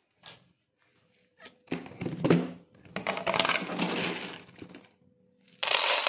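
Dry cat kibble poured into a pet food bowl, the pellets rattling and clattering in two pours, the first about two seconds in and a longer one about three seconds in. A brief rustle comes near the end.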